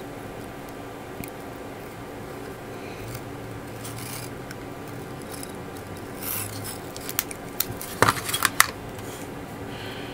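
Tamiya masking tape being wrapped and pressed by hand around a small plastic model part: soft rubbing, then a cluster of small crackles and clicks about seven to nine seconds in. A faint steady hum runs underneath.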